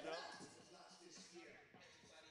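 Near silence: the last word of commentary, then faint background ambience from the basketball court.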